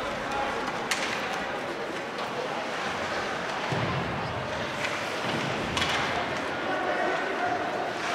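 Ice hockey rink during live play: a steady wash of skates on ice and crowd murmur, with a sharp knock about a second in and faint voices later on.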